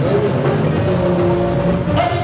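Live band music playing on, with long held notes over a steady bass-and-drum bed in a gap between sung lines.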